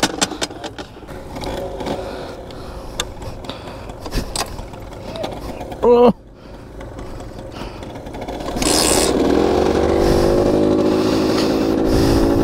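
A Rieju MRT 50's two-stroke 50cc engine being kick-started: a few knocks and scrapes, then it catches about two-thirds of the way in, revs briefly and settles into a steady idle.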